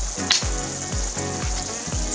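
Glutinous rice cooking down in coconut milk and brown sugar, sizzling in a skillet as it is stirred with a wooden spoon. Background music with a steady beat plays underneath.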